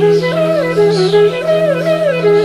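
Indian bamboo flute (bansuri) playing a slow melody that slides up and down between notes, over a steady low drone.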